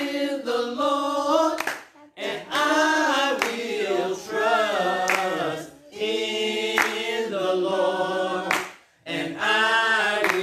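Slow unaccompanied singing, held notes bending in pitch, in long phrases with short pauses between them. A sharp clap-like hit falls roughly every second and a half to two seconds, keeping time.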